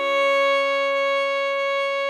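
Viola holding one long, steady note of the melody, with a lower note sustained underneath.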